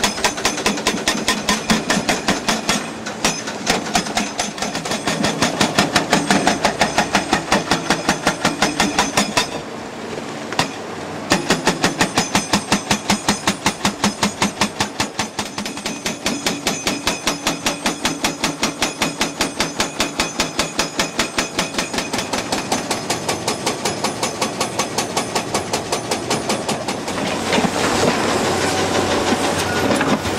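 Indeco HP 12000 hydraulic breaker on an excavator, pounding rock in rapid, evenly repeating blows. The blows stop for about a second and a half about ten seconds in, then resume.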